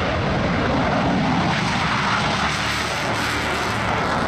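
Eurofighter Typhoon's twin EJ200 turbofan engines at full power during takeoff and climb-out, a loud steady jet noise that cuts in suddenly at the start.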